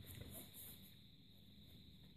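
Near silence: room tone with a faint steady hiss, and a few faint soft handling sounds from a faux-leather tablet case being picked up in the first half second.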